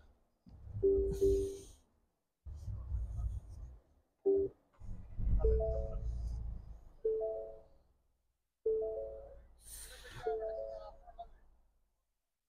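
Ford Bronco dashboard chimes as the car is switched on: a string of short electronic tones, some single notes and some two- or three-note chords, sounding every second or two, with a low rumble under several of them.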